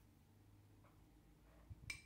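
Near silence: faint room tone with a low hum, broken by a faint tick about a second in and a couple of short clicks near the end.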